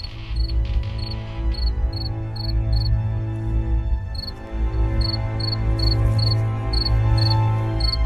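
A cricket chirping in short, evenly spaced chirps, roughly three a second, over slow background music of long held low notes.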